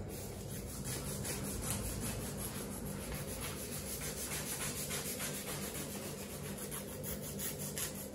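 A hand-held nail file rubbing across artificial nails in rapid, even back-and-forth strokes, shaping the tips to a point.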